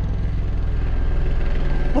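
Helicopter close overhead, a loud, steady drone of rotor and engine.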